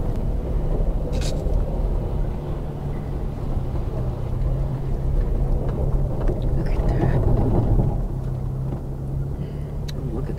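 Vehicle driving slowly over a rutted, muddy dirt road, heard from inside the cabin: a steady low engine hum and tyre rumble, with a sharp click about a second in.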